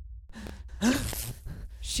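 A man's sharp, breathy gasp about a second in, with a brief falling voiced sound in it.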